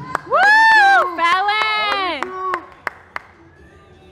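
Audience member close to the microphone letting out two long, high cheering yells, each rising and falling in pitch, with a few scattered claps.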